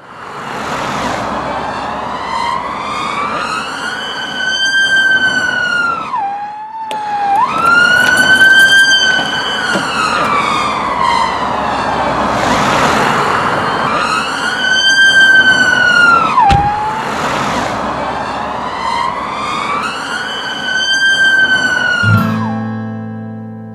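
Emergency-vehicle siren in a slow wail: a tone that climbs, holds, then drops away, in cycles of several seconds, over a steady rushing noise. A single sharp thump comes about three-quarters of the way through.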